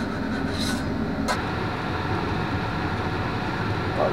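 Steady low hum of a kitchen range-hood exhaust fan over a flat-top griddle. A single short metallic click, a spatula against the griddle, comes a little over a second in.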